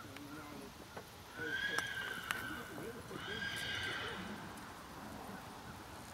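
A horse whinnying twice, each call about a second long, the second starting about three seconds in.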